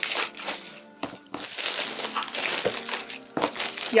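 Plastic shrink-wrap crinkling and tearing as it is pulled off a boxed perfume, in uneven bursts with a few sharper crackles, over quiet background music.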